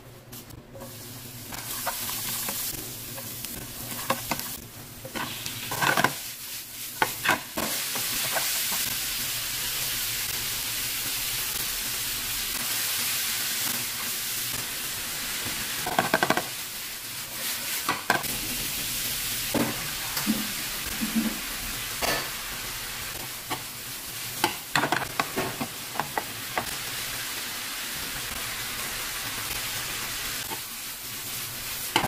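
Beef and cauliflower sizzling as they stir-fry in oil in a nonstick frying pan, the sizzle rising about two seconds in and holding steady. Scrapes and knocks of stirring against the pan come now and then.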